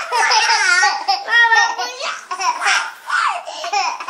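Two young children laughing hard together, high-pitched and almost without pause, as they tickle and grab each other.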